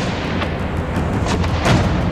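Gunfire in a street: several sharp shots, three in under two seconds, over a steady low rumble.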